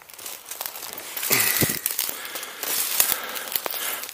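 Dry twigs, dead branches and blackberry brambles crackling, snapping and rustling as a person pushes on foot through thick undergrowth, in an irregular run of small sharp cracks.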